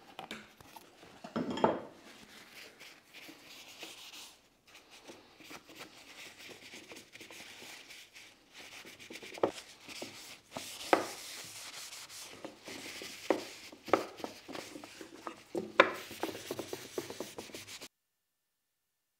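Paper towel wiping Danish oil over the surface of a wooden ash box: a steady rubbing hiss, broken by half a dozen short knocks as the box and oil can are handled on the wooden bench.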